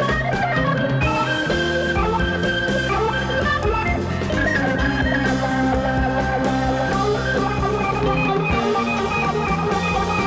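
Progressive rock recording playing: sustained organ or keyboard chords with guitar and a drum kit keeping a steady beat.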